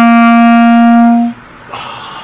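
Clarinet holding one long, steady note that cuts off about a second and a half in.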